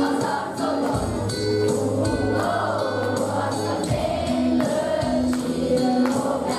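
Children's choir singing a Christmas song over an instrumental accompaniment with a steady beat.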